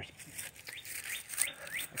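A bird calling over and over in short rising chirps, about three a second, over a faint rustling as of footsteps in dry leaves.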